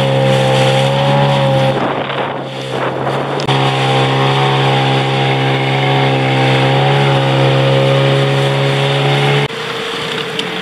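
Small boat outboard motor running at a steady speed, briefly washed over by a rush of water and wind noise about two seconds in. Near the end it throttles back and its sound drops away, leaving water and wind.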